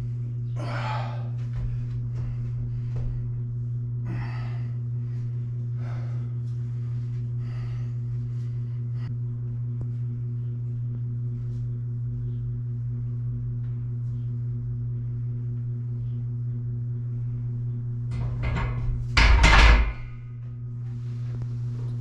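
A steady low hum runs under a weightlifting set. There are a few short exhalations in the first several seconds. Near the end comes one loud clunk with a deep thud as the barbell is set back in the rack.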